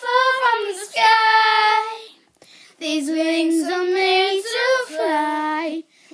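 Girls singing unaccompanied, with long held notes and a short break about two seconds in.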